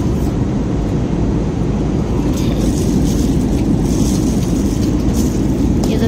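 Airliner cabin noise in flight: a steady low rumble from the engines and the air rushing past the fuselage.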